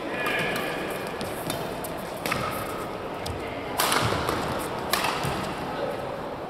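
A men's doubles badminton rally: sharp cracks of rackets striking the shuttlecock and shoes squeaking on the court mat, with the loudest hits about four and five seconds in.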